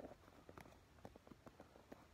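Faint, irregular light clicks of wooden popsicle sticks knocking against each other as they are woven over and under one another, about ten small ticks in two seconds.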